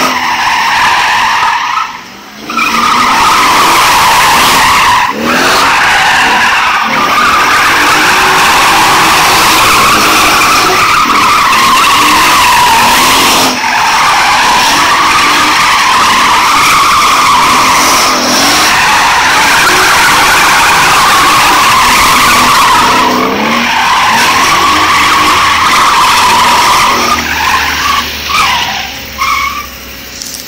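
Car tyres squealing loudly and continuously as the car drifts on cobblestones, spinning up thick tyre smoke, with the engine revving beneath. The squeal wavers in pitch, breaks off briefly a few times, and stops about two seconds before the end.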